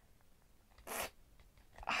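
Near silence, broken about a second in by one short, soft noise, such as a quick rustle or breath.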